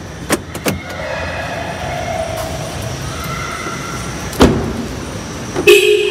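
Car door of a Hyundai i20: two latch clicks near the start, then the door shut with a single thump about four and a half seconds in, over a steady background hum. A short held tone sounds near the end.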